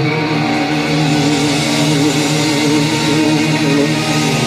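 Hard rock band playing live with distorted electric guitar through Marshall amplifiers; one long note is held with an even, wavering vibrato throughout, over a steady sustained wash of lower guitar and bass tones.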